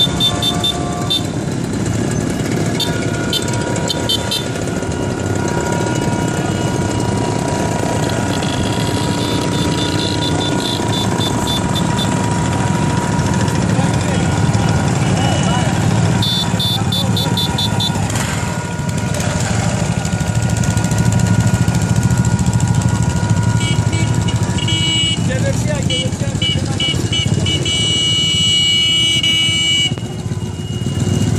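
A procession of old small motorcycles and mopeds riding past one after another, their small engines running steadily, with a sidecar motorcycle passing near the end. Voices carry in the background.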